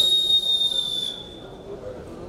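A referee's whistle sounds one long, steady, high blast of about a second and a half, fading at the end. It stops the action on the wrestling mat.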